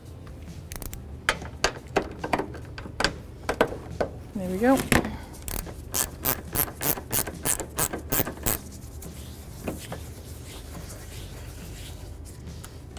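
Hand ratchet on a socket extension running in a 10 mm bolt: a few scattered metal clicks and knocks at first, then, from about the middle, a quick run of ratchet clicks at roughly four a second for about three seconds.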